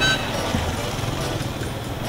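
Motorcycle engine running as it approaches: a low, steady hum over street noise.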